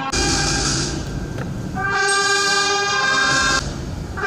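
Brass band music, the band sounding long held chords: one at the start, a quieter stretch, then another from about the middle that breaks off shortly before the end.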